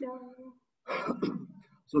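A person clearing their throat about a second in, between bits of speech.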